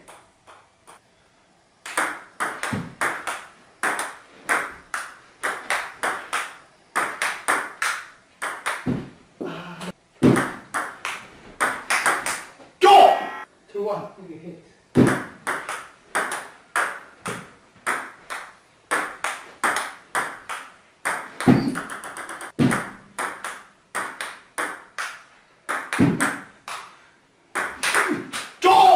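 Table tennis rally: a celluloid ball clicking back and forth off paddles and the table at about two to three hits a second, with one short break midway. Around the middle, the ball strikes a gong, which rings briefly.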